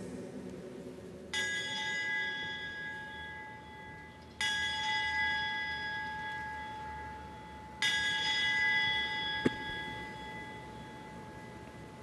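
Altar bell struck three times, a few seconds apart, each stroke ringing on and fading slowly. It marks the elevation of the consecrated host at Mass. A short click comes near the end.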